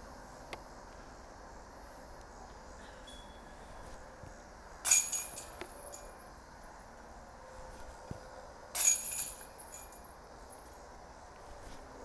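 Two discs striking the chains of a Dynamic Discs disc golf basket, about four seconds apart: each a sudden metallic chain rattle and jingle that dies away within a second. Both are made putts, the discs caught by the chains.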